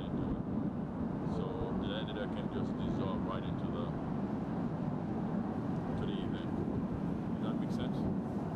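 Outdoor ambient noise: a steady low rumble, like distant traffic, with faint indistinct voices and a few brief higher chirps.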